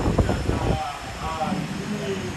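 A man's voice talking through a microphone, words not made out, over a steady background hum.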